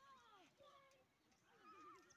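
Faint, distant shouting voices: a few short rising-and-falling calls.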